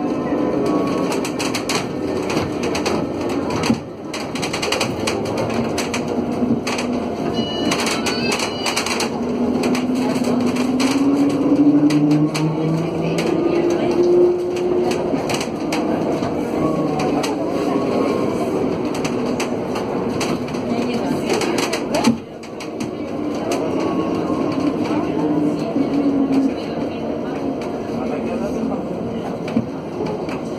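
Alstom Aptis battery-electric bus heard from inside the cabin while driving: the electric traction motors' whine climbs in pitch over several seconds as the bus accelerates, most clearly around the middle, and climbs again near the end. Rattles of the interior fittings and road noise run under it.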